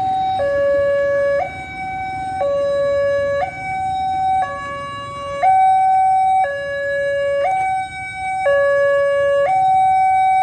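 Railway level-crossing warning alarm sounding, an electronic signal that alternates between a higher and a lower tone, each held about a second. It is warning of an approaching train as the crossing barriers come down.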